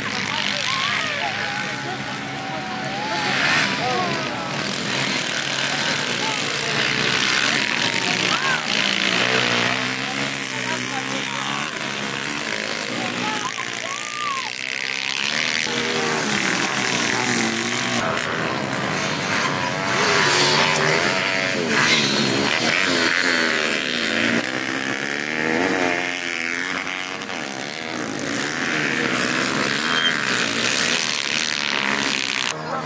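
Several small pit bike engines revving, their pitches rising and falling and overlapping as the riders open and close the throttle.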